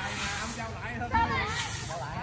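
People's voices talking and calling out, one louder call just after the first second, over a steady high-pitched hiss.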